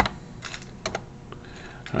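Computer keyboard keystrokes: a few separate sharp key clicks, the first the loudest.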